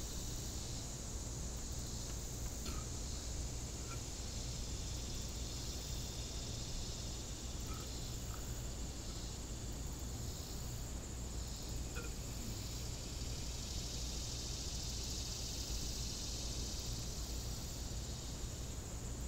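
Steady high-pitched chorus of insects in summer vegetation, swelling and fading slightly, over a low rumble, with a few faint short chirps.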